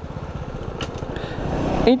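Honda Biz's small single-cylinder four-stroke engine running with fast, even firing pulses, growing steadily louder as the bike moves off again after nearly stopping.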